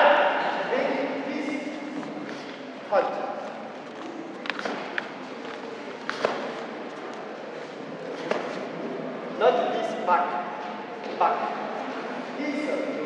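Short spoken bursts of a man's voice in a large, echoing sports hall. Around the middle come a few sharp thuds as two karateka in fighting stance move on the mat.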